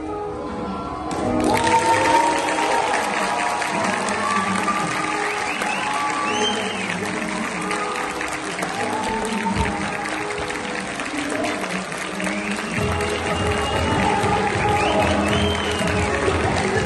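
Audience applauding over music; the applause breaks out about a second in, after the acrobat's somersault on the Russian bar.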